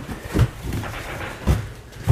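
Two dull thumps about a second apart over a low rustle.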